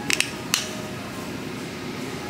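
Plastic cap of a Degree tart cherry body wash bottle being opened to smell the product: two quick clicks right at the start and a single click about half a second in, over a steady low store background.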